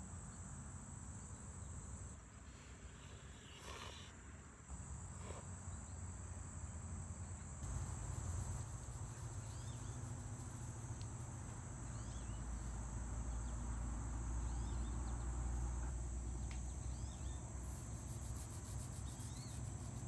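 A steady, high-pitched chorus of insects trilling in summer woodland, with a few faint chirps. A low rumble swells in from about a third of the way in.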